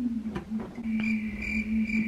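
A girl humming one long, steady 'hmm' into a toy microphone while stuck for a joke. A thin, high steady whine joins about a second in.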